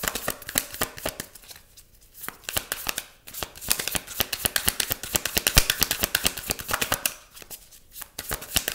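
A tarot deck being shuffled by hand: rapid flicking and slapping of the cards, with short pauses about two seconds in and again near the end.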